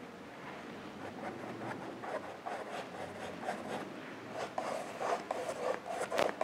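Paintbrush scrubbing acrylic paint onto canvas in quick short strokes, which come faster and louder in the last second or so.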